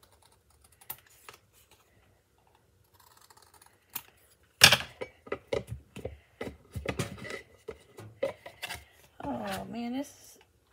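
A few faint snips of scissors through thin cardboard, then from about halfway a loud knock and a quick string of clicks and knocks as a cardboard circle is pressed and worked down into a ceramic mug to test its fit. A short voiced sound near the end.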